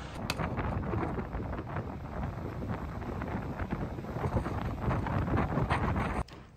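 Wind buffeting the microphone over surf breaking on a rocky seashore, a steady rough noise with uneven gusty rumbles.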